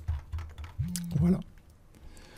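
A few keystrokes on a computer keyboard in quick succession, followed by the spoken word "voilà".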